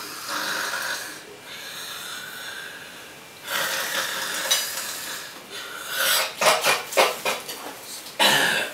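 A man snoring: long, rasping drawn-out breaths, then a run of short, loud snorts about six seconds in as he wakes.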